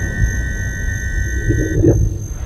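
Electroacoustic music: a dense, rapidly pulsing low rumble with a noisy mid-range texture beneath a sustained high two-note tone that cuts off suddenly near the end.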